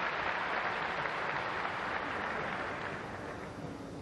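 Arena audience applauding a cleanly landed acrobatic series on the balance beam, loudest at the start and slowly fading.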